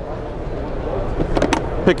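The plastic case of a Niton FXL portable XRF analyzer is handled as its closed lid is latched and its carry handle is raised. A sharp click comes about one and a half seconds in, over steady background noise.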